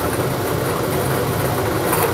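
Four-chamber lottery draw machine running steadily, its balls tossed about in the mixing chambers, with a constant mechanical hum.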